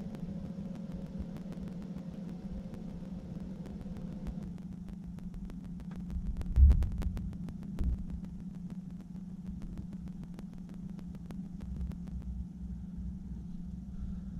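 A steady low hum with a low rumble beneath it and scattered faint clicks, broken by a short low thump a little past halfway.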